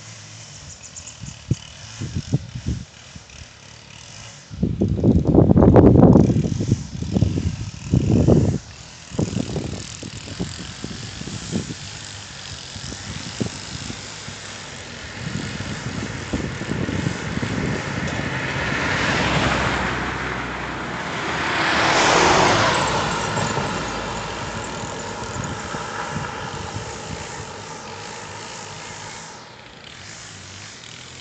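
A car passing close by: its tyre and engine noise swells over several seconds, is loudest a little past the middle, then fades away. Earlier, a few seconds in, there are short bursts of loud low rumbling.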